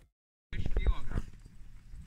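Half a second of silence, then people's voices outdoors with a few knocks, fading after about a second.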